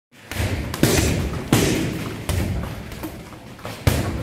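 Gloved punches and a leg strike landing on a hanging heavy punching bag: a series of sharp thuds, about one a second.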